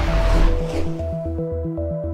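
Background music for an animated outro: held synth notes over a pulsing bass of about four beats a second, with a whoosh fading out in the first second.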